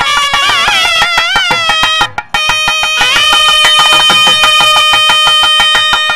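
Nadaswaram playing an ornamented, gliding phrase that breaks off about two seconds in, then holding one long steady note, over rapid, steady tavil drum strokes: South Indian temple mangala vadyam music.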